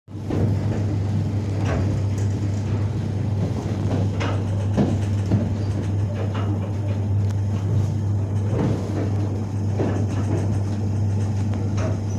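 Inside a moving train: a steady low hum with running rumble, broken by a few short knocks.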